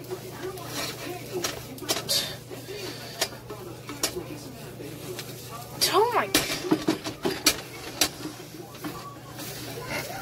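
Spatula clicking and scraping against a frying pan as a frying egg is worked loose, with sharp irregular clicks throughout and a steady low hum underneath.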